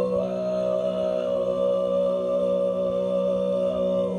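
Mongolian throat singing: a man's voice holding one steady low drone with bright overtones ringing above it.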